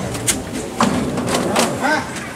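A few sharp knocks or thuds spread through the two seconds, with people's voices calling out in the second half.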